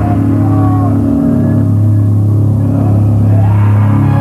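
Black metal band playing live: distorted electric guitar and bass guitar holding low, sustained notes. The upper range thins out in the middle and fills back in near the end.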